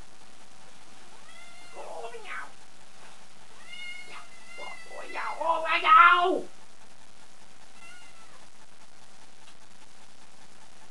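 Domestic cat meowing: a few short calls that rise and fall in pitch, then a louder, longer run of yowling about five to six seconds in, and one more short meow near the end.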